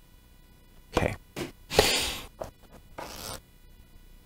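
Paper rustling in a few short bursts as a small guidebook is picked up and its pages flipped open.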